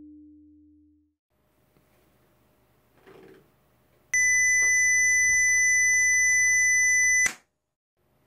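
The clybot C6 robot's Arduino-driven speaker sounds a steady, shrill 2 kHz beep. It starts about four seconds in and lasts about three seconds before cutting off suddenly. The beep means the robot senses a quiet room.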